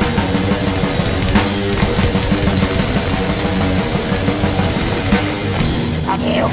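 Black metal band playing an instrumental passage: distorted electric guitars, bass and drums at a dense, steady loudness, with no vocals until just after it.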